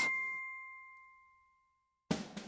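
A single bell-like ding, a struck chime ringing with a clear tone and a higher overtone that fades away within about a second: the show's title-card sting.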